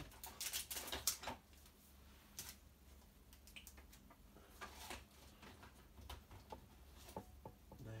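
Faint clicks and rustles of craft supplies being moved about on a desk while searching for a missing pack of foam dimensionals. There is a quick cluster of clicks in the first second or so, then scattered single clicks, over a faint low hum.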